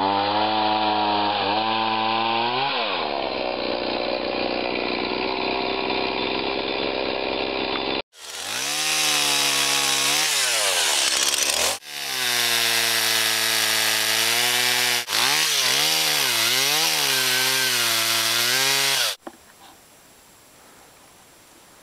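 Two-stroke chainsaw running at high revs, its pitch sinking and climbing again and again as it loads up and frees in the cut of dead pine. It drops out briefly a few times and stops shortly before the end.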